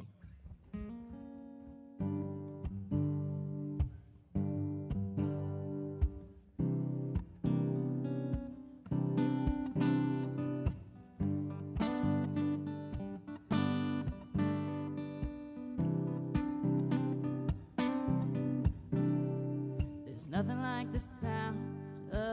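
Acoustic guitar playing a song's opening, soft notes for about two seconds and then chords strummed in a steady rhythm. A voice starts singing near the end.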